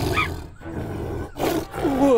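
Cartoon tiger roaring twice, a rough, noisy roar.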